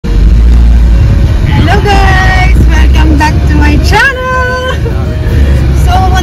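A woman's voice singing, with held notes and sliding pitch, over the steady low engine and road rumble inside a moving Fiat car's cabin.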